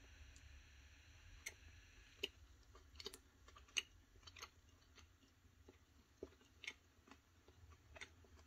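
Faint close-up chewing of a soft baked cake square: a scattering of small, quiet mouth clicks and smacks over low room hum.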